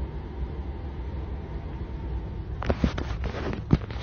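Steady low room hum, then a quick cluster of knocks and clicks in the last second and a half, the loudest just before the end, as the phone is handled and swung round.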